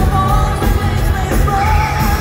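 Power metal band playing live through a large PA: loud drums and bass underneath, with a high melody held in long notes over them.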